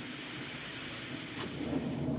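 Steady rumbling noise of a gathering storm, like distant thunder, from an old film soundtrack, swelling slightly near the end.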